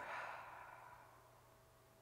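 A woman's audible exhale, a soft sigh of breath fading away over about a second.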